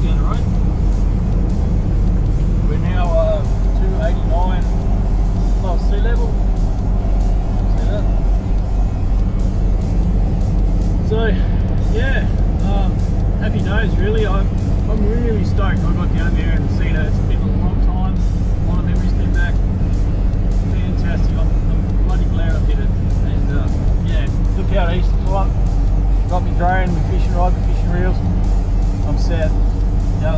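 Steady in-cabin drone of a V8 Toyota Land Cruiser's engine and tyres cruising along a country road, with faint sung music over it at times.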